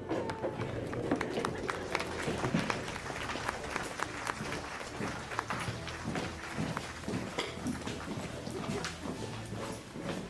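Applause: dense, irregular clapping with voices mixed in, and music faintly under it.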